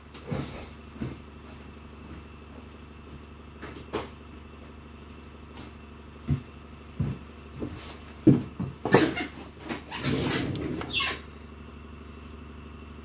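Tools being handled on a desk: scattered light clicks and knocks, a burst of louder clatter about eight seconds in, then about a second of scraping as needle-nose pliers are set to a small black acetal plug.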